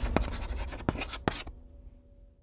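Chalk-on-chalkboard sound effect: a few sharp scratching strokes over the fading tail of electronic music, dying away near the end.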